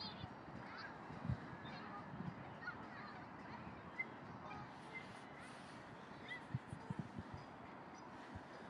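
Faint, distant waterfowl calling from the lake: a few short honking calls scattered over quiet outdoor background. A few soft low knocks come in the second half.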